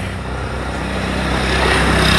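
A road vehicle passing close by, its engine and tyre noise growing steadily louder as it approaches.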